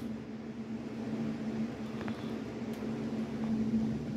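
A steady low mechanical hum, with a faint tick about two seconds in.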